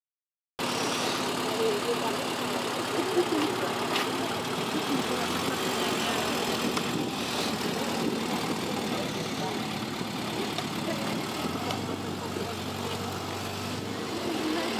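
Rover Mini 1300's 1275 cc A-series four-cylinder engine idling and running at low speed, with voices in the background.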